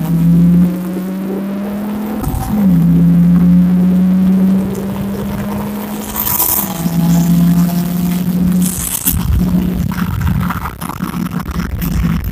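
Car engine heard from inside the cabin, pulling hard at high revs under full acceleration. The pitch climbs slowly and drops sharply at upshifts about two and a half and six and a half seconds in, with short hisses around the later shifts.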